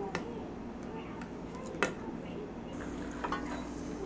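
A metal spoon scooping sugar out of a ceramic canister, with light scraping and two sharp clinks of the spoon on the dishes, the louder one a little under two seconds in.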